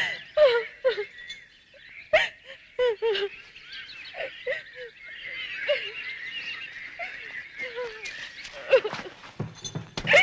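Birds calling: short, falling calls at irregular intervals over a busy chorus of high chirping.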